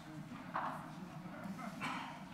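Faint, indistinct murmuring of voices, with two short louder voice sounds about half a second in and near the end.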